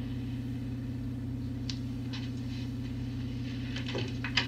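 A steady low hum with two even pitches holds at one level throughout, and a few faint ticks sound around the middle.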